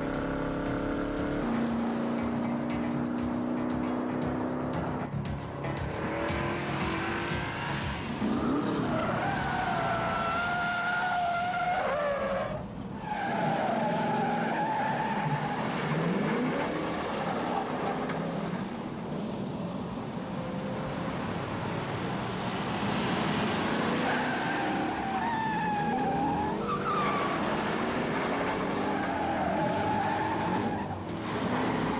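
Muscle-car engines running hard at speed with repeated tire squeals, wavering tones heard around ten seconds in and again late on, as the cars slide through curves.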